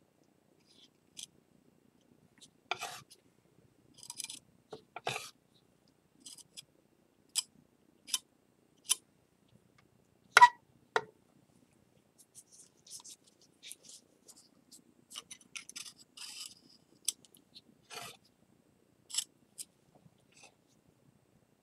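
Metal palette knife scraping and tapping on a glass slab while working a sticky mugi-urushi paste of lacquer and flour. The sounds come as scattered short scrapes and clicks, the loudest a sharp click about ten seconds in.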